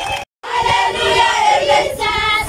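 Sound cuts out for an instant, then a large group of schoolchildren sings together in chorus, loud and sustained.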